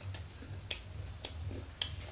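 Sharp, evenly spaced ticks, a little under two a second, over a steady low hum.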